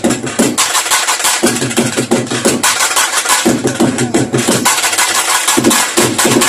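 Tamil karakattam folk music: fast, dense drumming on barrel drums, loud and unbroken.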